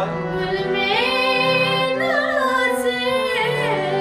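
A female voice singing a ghazal in Raag Aiman (Yaman), in long notes that glide up and down with ornaments, over a steady low accompaniment holding sustained notes.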